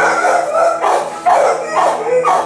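Shelter dogs barking over and over, about three barks a second, loud and sharp.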